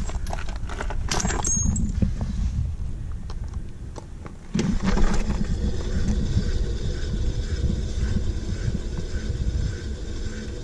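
Trailer wheel spun by hand, turning freely on its hub. Light clicks and handling knocks come first. About four and a half seconds in a steady whirring rumble starts abruptly and carries on.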